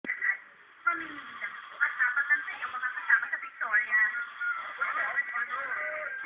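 Tinny, distorted television drama dialogue: voices squeezed into a thin upper-middle band with almost no low end, a badly degraded soundtrack. There is a short lull just after the start.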